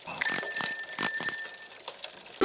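Bicycle bell rung in a quick run of strikes, a bright ringing that starts just after the beginning and fades out near the end.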